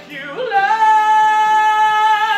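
A man singing, sliding up into a long high note about half a second in and holding it steadily with a slight vibrato.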